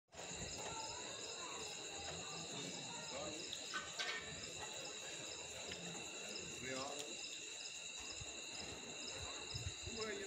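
Crickets or other night insects calling in a steady chorus of high-pitched trills, with faint distant voices underneath.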